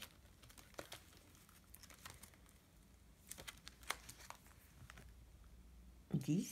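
Faint crinkling of plastic sleeves and paper as the pages of a ring binder are turned, with a few light clicks and taps around the middle; otherwise near silence.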